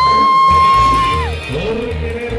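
Live cumbia band music with a horn section: a high note slides up, is held for about a second, then falls away over a bass beat.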